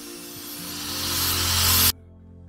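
Angle grinder working steel on a trailer hitch mount: a loud grinding hiss that grows louder as it goes, then cuts off suddenly near the end.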